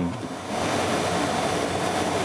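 A steady hiss of noise, with no pitch in it, that comes up about half a second in and holds evenly.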